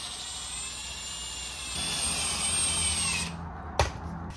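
Cordless drill running continuously with a steady whine, which grows louder and higher about two seconds in and then cuts off shortly before the end, followed by a single knock. The drill is cleaning old Loctite thread-locker off the flywheel bolts.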